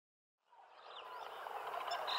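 Silence for about the first second, then a faint jungle ambience with bird calls fading in and slowly growing louder.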